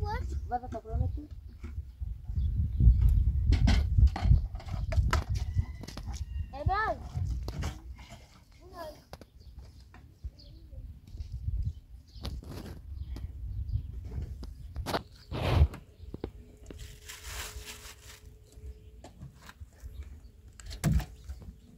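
Small glass tea cups clinking against a tray in scattered sharp clicks, over a low rumble that is loudest in the first few seconds. A few short voice calls sound near the start and about seven seconds in.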